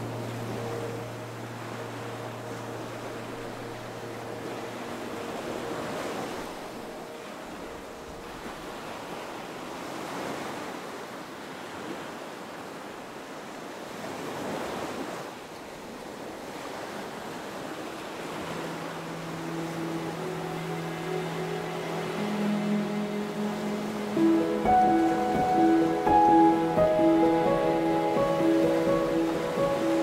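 Small waves washing steadily against a rocky shoreline, swelling and easing. Soft background music lies over it: held notes fading away in the first few seconds, then music coming back in after about 18 seconds and growing louder, with a plucked melody from about 24 seconds.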